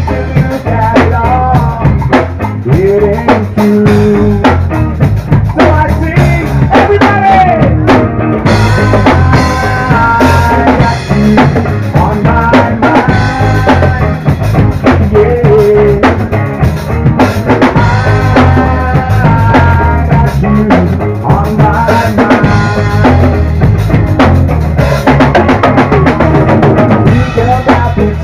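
Live rock band playing loudly, with a drum kit and bass carrying a steady beat and a bending melodic lead line over it.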